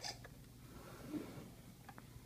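Faint handling sounds: a sharp click at the start, a short rubbing noise about a second in, and a couple of light clicks near the end, over a steady low hum.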